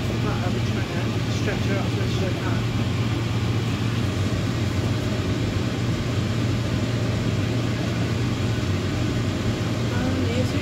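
A steady low hum, like a fan or motor, throughout, with faint talk in the background during the first couple of seconds.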